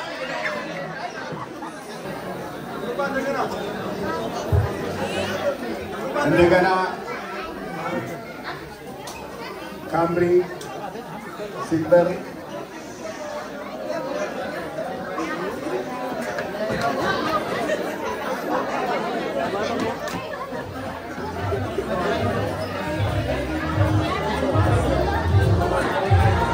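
Indistinct conversation of several people at party tables, with a few louder voices. Background music plays underneath, and its bass becomes more prominent near the end.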